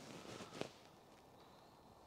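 Near silence: room tone in a pause between speech, with a faint short click about half a second in.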